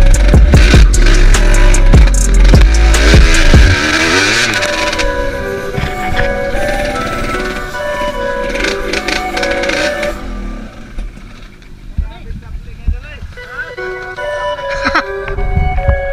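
Background music over a dirt bike engine being ridden hard in the first few seconds. The engine fades about four seconds in, leaving the music.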